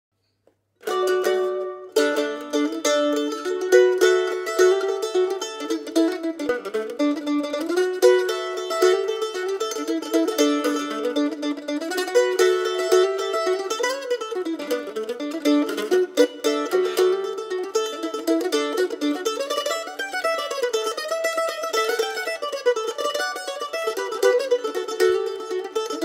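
Heartwood AM-70/MA A-style mandolin with f-holes playing a solo folk tune in quick plucked notes, starting about a second in.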